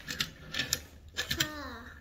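Light clicks and rustling from hands handling a plush toy. A short murmured vocal sound falls in pitch about one and a half seconds in.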